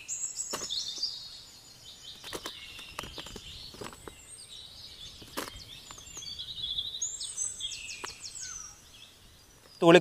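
A bird singing in high whistled phrases: one burst of song at the start and another about seven seconds in, with several short soft clicks and taps in between.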